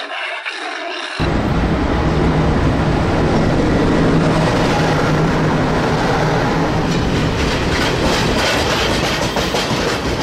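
Freight train rolling past close by: a steady loud rumble with a low hum, starting suddenly about a second in, with wheel clicks over the rail joints in the last few seconds as the wagons pass. Before it, a brief different sound is cut off.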